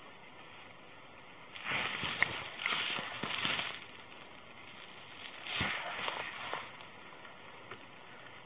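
Cloth rubbing and scraping against a body-worn camera's microphone in two bouts of rustling, the first about a second and a half in and the second around five seconds in, over a low steady hiss.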